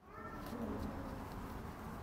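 Faint steady outdoor background noise, with a brief low coo about half a second in and a few light ticks.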